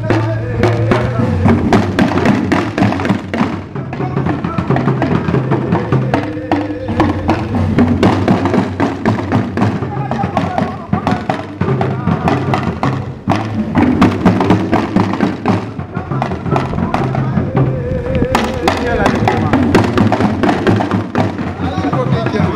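An ensemble of Dagomba hourglass talking drums (luŋa) played together in a dense, fast, continuous drumming pattern, with voices heard over the drums.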